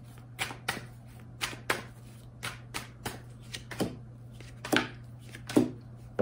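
A tarot deck being shuffled by hand, overhand: a string of sharp, irregular card slaps, about two or three a second.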